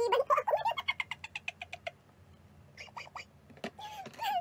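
A woman laughing: a fast run of short, high-pitched pulses that fades out after about two seconds, followed by a few faint clicks.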